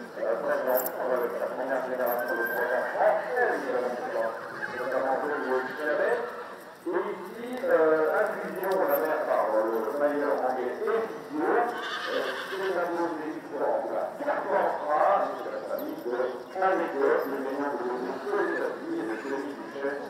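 A horse whinnying, heard amid people talking.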